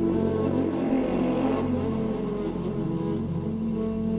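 Electronic progressive house music from a DJ mix: sustained synth tones with a rushing noise sweep that swells during the first second or two, then fades.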